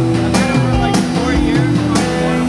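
A live rock band plays electric guitars over a drum kit, with the drums hitting on a steady beat about every half second.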